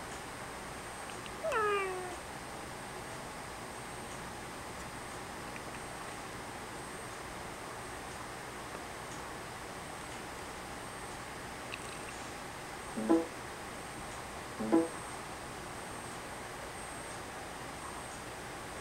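A single short call, gliding down in pitch over under a second, about one and a half seconds in, over a steady low hiss. Two short vocal sounds follow near the end, the first a spoken "yeah".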